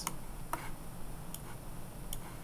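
Three sharp, isolated clicks of a computer mouse, spaced irregularly, over faint low hum.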